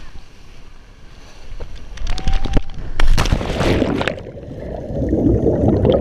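Cliff jump into the sea on a GoPro: wind on the microphone builds during the fall, then a loud splash about three seconds in as the camera hits the water, followed by a muffled underwater rush of bubbles and churning water.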